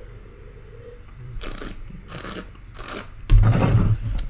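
Red wine being tasted: three short, hissy slurps as air is drawn through the wine in the mouth, then a louder low rumble near the end.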